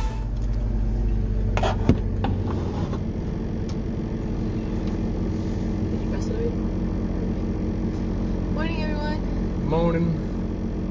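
Vehicle engine idling with a steady low hum, heard from inside the van's cab. A couple of sharp knocks come a second or two in, and a brief voice is heard near the end.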